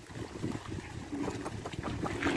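Water splashing and sloshing as a yoked pair of bullocks haul a cart up out of a shallow pond, their hooves and the cart wheels churning through the water with irregular low knocks.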